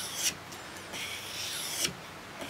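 Steel bevel of a hook knife being swept across 1200-grit abrasive paper stuck to a wooden block: a soft rasping hiss as the blade is sharpened, with a short sharper scrape near the end.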